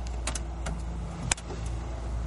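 Ride noise inside a moving aerial tram gondola: a steady low rumble and hum, with a few sharp clicks, the loudest just over a second in.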